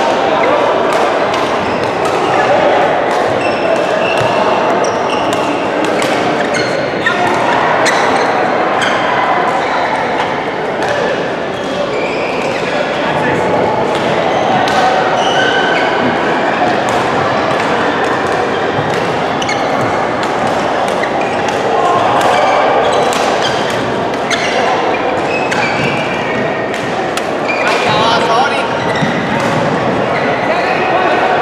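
Badminton rackets striking shuttlecocks, frequent sharp clicks echoing through a large sports hall over steady background chatter of many players.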